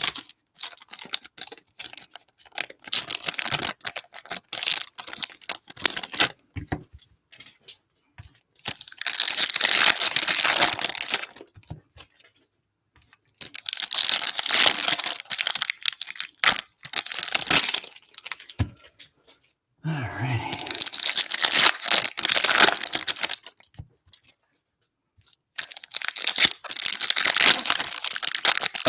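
Foil trading-card pack wrappers crinkling and tearing open in several bursts of a few seconds each, with short rustles and clicks of cards being handled between them.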